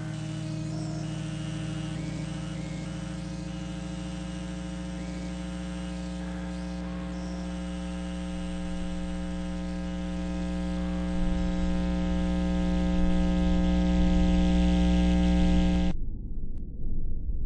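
Drone music: a sustained chord of many steady tones over a low hum, unchanging in pitch. The low end swells louder about two-thirds of the way through, and the drone cuts off abruptly at the end.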